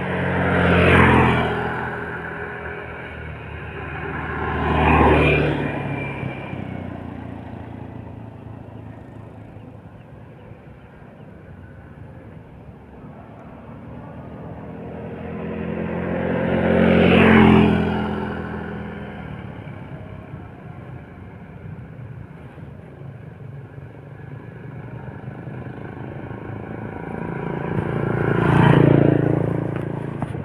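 Motor vehicles passing on the road close by, one after another: four pass-bys, each swelling to loud and fading away, about a second in, about five seconds in, midway and near the end.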